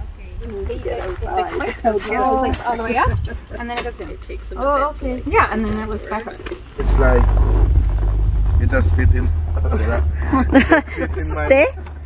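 People talking, and about seven seconds in a steady low hum starts abruptly underneath them: a massage chair's vibration motor running.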